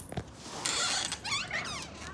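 A wooden door being unlatched and swung open: a click, a short rasp from the latch, then the hinge squeaking in several rising and falling squeals.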